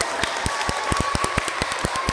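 An audience of children clapping and applauding, with one person clapping loudly close to the microphone about six times a second over the dense patter of the room's applause.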